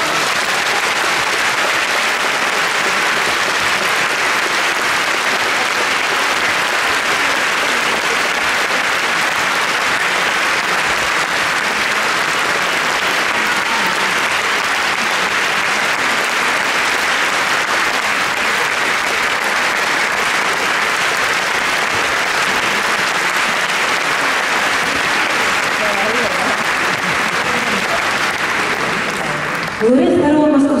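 A concert-hall audience applauding: dense, even clapping that starts abruptly, holds steady and eases off just at the end.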